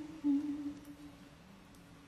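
A woman humming a slow tune, holding a note that fades out about a second in.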